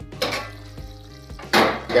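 Stainless-steel plate lid lifted off a kadhai and set down with metal clinks, over the sizzle of curry frying in the pan. The loudest clatter comes near the end.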